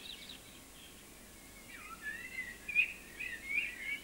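Faint birdsong of chirps and warbling phrases, sparse at first and busier from about halfway through.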